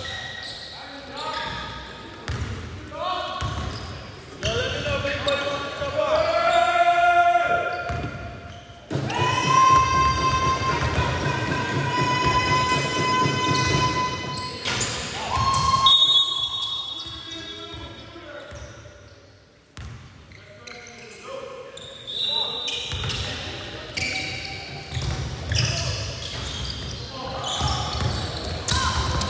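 Basketball bouncing and dribbling on a hardwood gym floor, echoing in the large hall, among players' voices.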